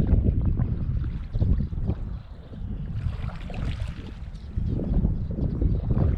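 Wind buffeting the microphone: an uneven low rumble that swells and drops, with a faint hiss coming in around the middle.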